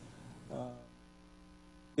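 A man's drawn-out "uh" hesitation about half a second in, trailing off into a faint steady hum.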